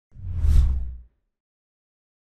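Whoosh sound effect for an animated title card: one deep swoosh that swells and fades within about a second.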